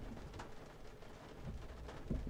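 A quiet pause in speech: faint background hiss, with one faint click about half a second in.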